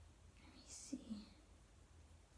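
A woman whispering a word or two under her breath, once, about a second in, over a faint low steady hum and otherwise near silence.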